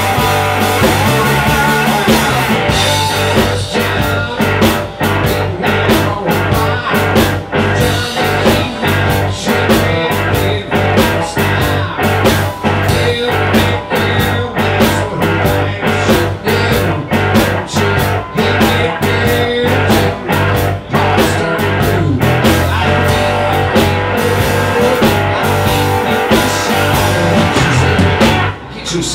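Live electric blues band playing: amplified cigar box guitar over electric bass and a steady drum beat, with a voice singing into the microphone.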